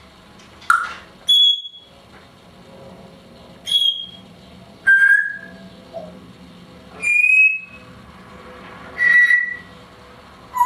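Timneh African grey parrot giving a series of short whistles: about seven separate single notes at differing pitches, high and low, some sliding, one every second or so.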